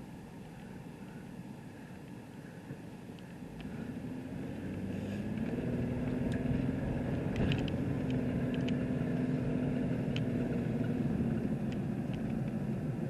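A car heard from inside the cabin, quietly idling while stopped, then pulling away about four seconds in. The engine and road noise rise and then hold steady as it drives on, with a few faint ticks along the way.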